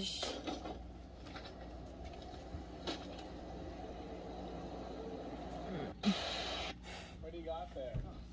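Faint outdoor background noise from a home video playing through a tablet's speaker, with a brief louder noise about six seconds in and a short spoken word at the very end.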